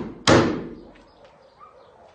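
Hammer blows on wooden framing, an evenly paced series of sharp strikes about 0.6 s apart, each with a short ringing tail. The last strike lands about a quarter-second in, and only faint small knocks follow.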